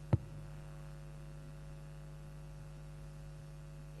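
Steady mains hum on the hall's PA system, broken once just after the start by a single sharp thump from a handheld microphone being handled as it is switched on.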